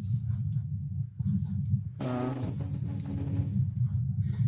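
Steady low rumble of background noise, with a brief hesitant 'uh' from a voice about halfway through.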